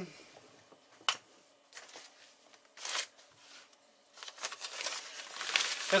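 Clear plastic bag crinkling and rustling as it is handled, with a sharp click about a second in and a short burst of rustle near three seconds. The rustling grows over the last two seconds.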